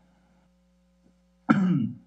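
A man clearing his throat once, about one and a half seconds in, after a near-silent pause with only a faint steady hum.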